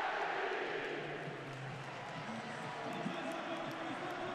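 Football stadium crowd: a steady wash of many voices, with a few single voices faintly audible within it in the second half.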